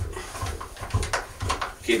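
A few scattered clicks and knocks of hand tools and metal parts as bolts are tightened on a spa pump motor.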